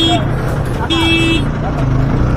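A vehicle horn sounding one steady note, which stops just after the start, then a second short blast about a second in, over the steady low running of an engine.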